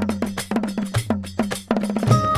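Percussion-only passage in a Hindi devotional song (Shiv bhajan): quick, sharp strokes at about six or seven a second over a deep bass note that falls about once a second, with no voice or melody.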